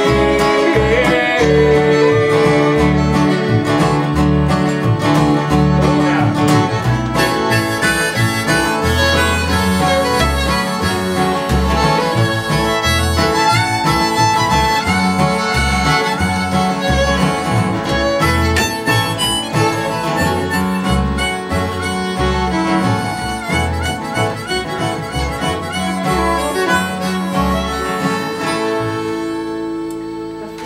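Acoustic guitar strumming and fiddle bowing through an instrumental passage of a folk/bluegrass-style song, played live with no singing. The playing tapers off near the end as the song finishes.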